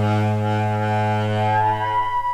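Tenor saxophone holding one long low note near the bottom of its range, which fades near the end as a higher held note from another instrument enters.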